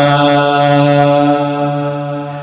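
A male muezzin's voice singing the adhan, holding the long final note of 'hayya ʿala ṣ-ṣalāh' on one steady pitch that fades slightly near the end.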